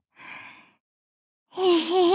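A short breathy gasp from a voice actor, then, about one and a half seconds in, a young woman's voice begins a pitched, breathy giggle.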